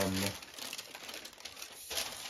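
Thin paper wrapping crinkling and rustling as it is unfolded and smoothed flat by hand, a quiet continuous rustle.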